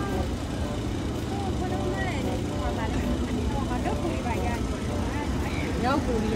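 Street ambience: a steady low rumble of traffic with faint voices in the background.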